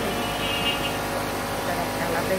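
Steady background hum and noise from running machinery, with a short high-pitched tone about half a second in.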